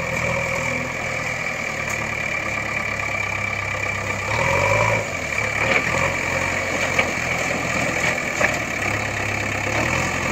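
An engine idling steadily, its low hum even throughout, with a few faint ticks. Nothing in the picture could make it: it is most likely an engine sound laid over footage of a plastic toy tractor.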